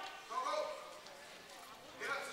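Indistinct voices calling out in a gymnasium, loudest about half a second in, then fading to quieter room noise with faint knocks.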